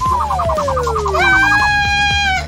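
Cartoon sound effects: a long descending whistle glide with a fast warbling trill over it, the classic sound of a fall. A little over a second in, a cartoon character's long, held cry comes in over it.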